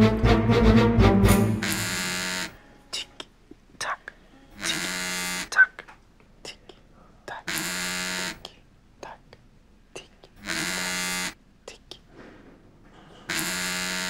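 A mobile phone on vibrate buzzing with an incoming call: five even buzzes of under a second each, one about every three seconds.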